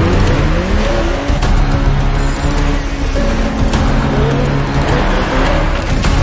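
An SUV engine revving in rising sweeps as the car accelerates, with tyre noise, mixed over dramatic soundtrack music with held tones.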